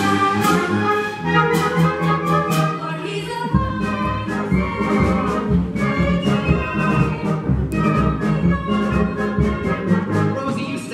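Musical-theatre pit orchestra with brass playing lively instrumental scene-change music, breaking in suddenly; a pulsing bass line comes in about three and a half seconds in.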